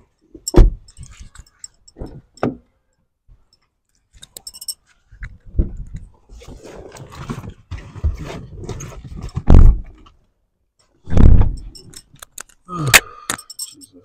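Car doors on a Lexus sedan being opened and shut: several heavy thumps a few seconds apart, with handling rattles. A flurry of clicks and clinks comes near the end.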